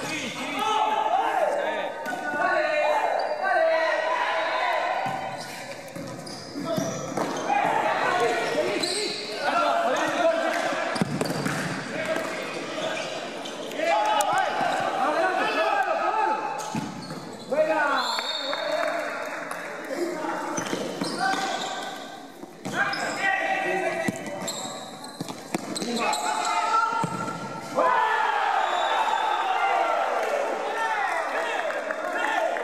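Futsal ball kicks and bounces echoing around an indoor sports hall, with players' and onlookers' voices throughout.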